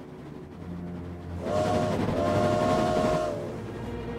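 A train passing on the rails: a low rumble builds, then about a second and a half in its horn sounds, a short blast and then a longer one, over the noise of the wheels on the track.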